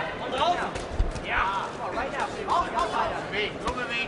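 Men's voices talking in a large hall, with a few dull low thuds, the loudest about a second in.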